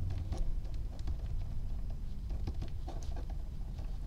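Pen writing on paper: faint scratches and small ticks as a word is written out, with a steady low hum underneath.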